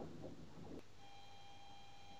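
Quiet room tone. About halfway through, a faint steady high tone sets in.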